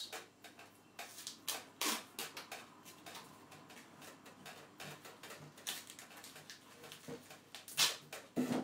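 Cloth duct tape being pulled off the roll and wrapped and pressed around a plastic bottle's cap: scattered soft crackles and taps, with a sharper one about two seconds in and a louder one near the end.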